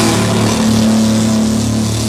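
A live hardcore metal band playing loud: heavily distorted guitars and bass hold a low chord over a wash of drums and cymbals, the full band having just crashed in.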